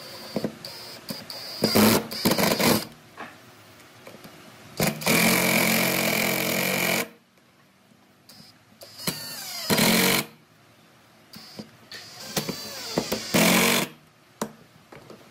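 Cordless drill-driver running in short bursts as it drives long wood screws into a solid wooden block: four runs, the longest a steady whir of about two seconds near the middle, the last close to the end.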